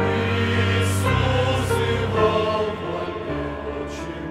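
Mixed choir of men and women singing a hymn in sustained chords, coming in louder right at the start.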